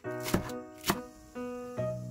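Chef's knife chopping through green onion stalks onto a wooden cutting board: two crisp strokes about half a second apart, over background music.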